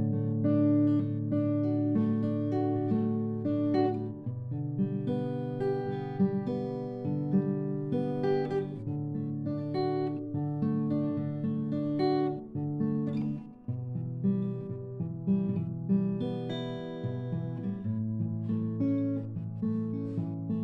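Background music: acoustic guitar playing a steady melody of plucked notes.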